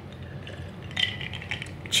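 A person drinking from a glass mug: faint sipping and swallowing, with a few small clicks about a second in and near the end.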